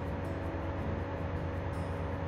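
A steady low hum with a faint, even higher tone over it, unchanging throughout, with no distinct knocks or clicks.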